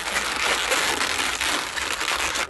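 Latex twisting balloons rubbing and crinkling against each other and against the hands as they are pressed and twisted together, a dense rustling close to the microphone.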